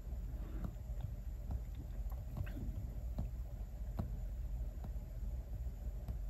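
An Apple Pencil tip tapping and dragging on an iPad Pro's glass screen: several light, sharp taps, roughly one a second, over a low steady hum.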